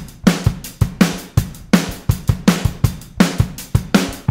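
Rock drum kit playing the song's solo intro: kick drum, snare and cymbals in a steady, driving beat, with no other instruments yet.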